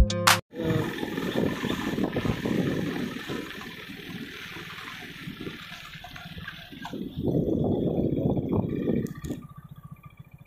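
Rough, gusty rushing noise of wind and motion on the microphone as the camera travels along the road, quieter in the middle and swelling again about seven seconds in. Background guitar music cuts off just at the start.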